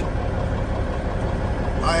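A tuned-up Peterbilt semi truck's diesel engine idling steadily, a deep, even drone heard inside the cab.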